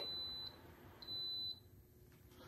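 Small electric tower space heater beeping twice as it is switched off by remote: two high, steady beeps of about half a second each, a second apart.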